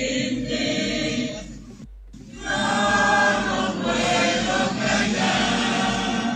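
A large crowd of mourners singing together at a funeral, many voices in unison like a choir. There is a short break about two seconds in, after which the singing comes back louder.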